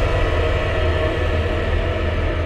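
Sustained low drone from a horror-film soundtrack: a deep, steady rumble beneath a cluster of held tones, with no beat or melody.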